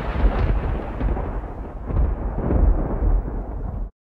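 An edited-in rumble sound effect like thunder, deep and noisy. Its hissy top fades away while the low rumble goes on, and it cuts off suddenly just before the end.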